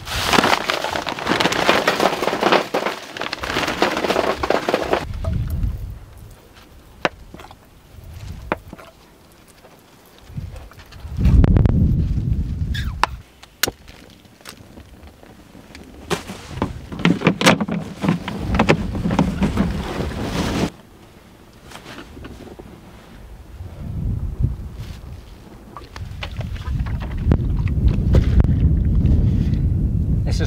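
Plastic bag rustling as charcoal briquettes are tipped into a metal fire tray, for about five seconds. Then wind buffets the microphone in gusts, with scattered sharp crackles from the burning charcoal.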